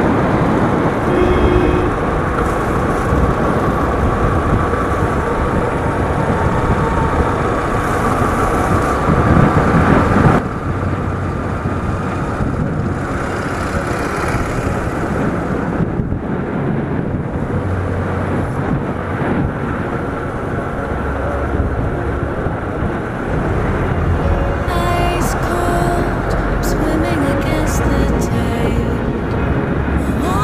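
Wind and road noise of a vehicle riding through town traffic, with its engine running underneath. The noise drops a little about ten seconds in.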